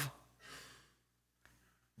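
A faint breath between a man's spoken words, about half a second in, then near silence with a tiny click past the middle.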